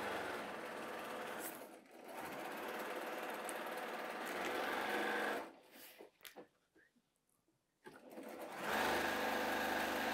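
Electric sewing machine stitching fast, in runs: it dips briefly about two seconds in, stops for about three seconds from about halfway, then starts up again near the end. It is sewing seams along both sides of drawn diagonal lines on paired fabric squares to make half-square triangles.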